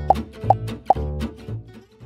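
Light children's background music with plucked bass notes, over which three short cartoon pop sound effects sound about twice a second. The music thins out near the end.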